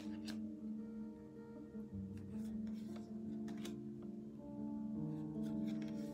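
Slow background music of sustained, layered tones that shift every second or so. Over it come a few short snaps and slides as stiff tarot cards are moved through the deck.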